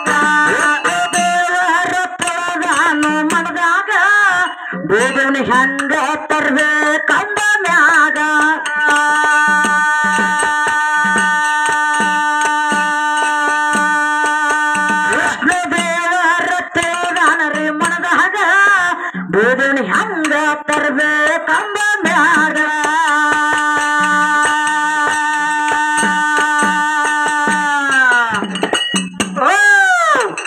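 Kannada folk song with microphone vocals holding long notes, over harmonium, small hand cymbals and a steady drum beat.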